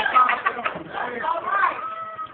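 A man's voice preaching, the words unclear, with some drawn-out, held pitches in the second half.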